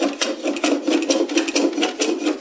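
Compass plane cutting along a curved wooden case side by hand, a quick run of short scraping cuts, several a second.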